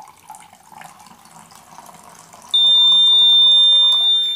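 Water poured into a bowl runs quietly, then about two and a half seconds in a piezo buzzer starts a loud, continuous high-pitched tone. The tone is the alarm of a BC548 transistor water level indicator, signalling that the water has reached the top probe.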